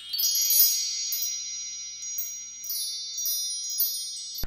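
Wind-chime-like shimmering sound effect: a cluster of high bell-like tones ringing on, with light tinkling strikes sprinkled above them for the first two-thirds or so.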